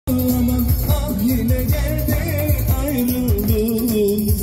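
Live amplified Turkish dance music: a singing voice and an ornamented melody line over a steady, driving drum beat, loud through the sound system.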